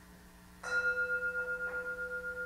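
An altar bell struck once about half a second in, then ringing on with a steady, slightly wavering tone. It marks the elevation of the bread after the words of institution at the Eucharist.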